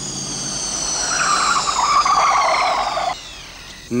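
Black Pontiac Firebird Trans Am driving along a road, with a high whine that falls steadily in pitch throughout. Tyre squeal comes in about a second in and cuts off suddenly just after three seconds.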